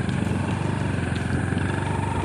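Motorcycle engine running steadily at road speed, heard from on board.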